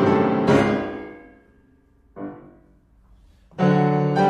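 Contemporary chamber music led by piano: a loud chord struck about half a second in rings and fades away into a near-silent pause, a single soft note sounds just past two seconds, and the ensemble comes back in loudly near the end.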